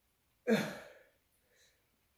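A man's loud sigh, starting suddenly about half a second in and trailing off, then a faint short breath: a reaction to the burn of a habanero he is eating.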